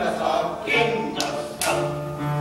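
A small group of men singing a folk song together without accompaniment, with long held notes about a third of the way in and again near the end.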